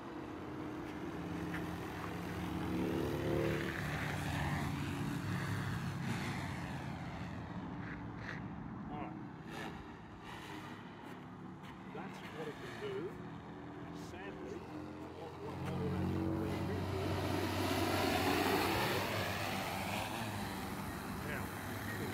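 DJI Matrice 300 quadcopter's rotors humming in flight, growing louder about three seconds in and again from about sixteen seconds as the drone comes closer.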